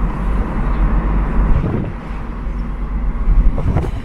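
Car driving: a steady low rumble of engine and road noise inside the car, with brief knocks near the middle and just before the end.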